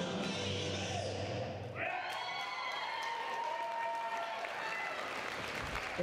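Dance music ends about two seconds in, and the audience takes over, applauding and cheering with long high-pitched whoops.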